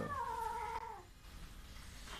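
Calico kitten giving a long, drawn-out meow that falls steadily in pitch and fades out about a second in.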